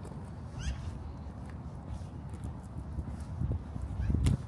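Footsteps scuffing along a gritty winter sidewalk over a steady low city rumble, with faint ticks of grit underfoot and a brief high rising chirp about half a second in.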